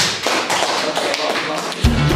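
A dense, noisy clatter of quick taps. Music with a deep beat cuts in just before the end.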